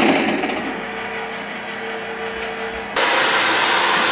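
An electric kitchen blender running with a steady motor whir. It drops to a softer whir with a steady hum about half a second in, then jumps abruptly louder again near the end.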